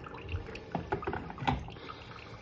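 Coffee machine brewing, liquid trickling and dripping, with a few light clicks and knocks, the sharpest about a second and a half in.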